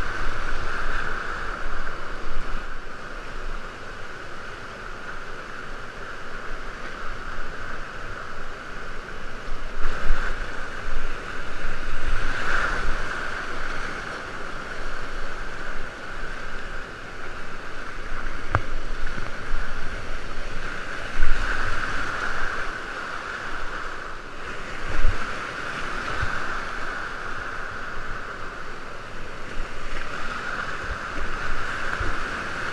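Whitewater rapids of the Youghiogheny River rushing around a kayak, close up, with splashes and water buffeting the microphone; the rush swells louder a few times as the boat runs the rapid.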